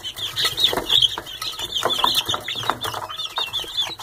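A brood of young Barred Rock chicks peeping without a break, many short high cheeps overlapping one another, with a few light taps among them.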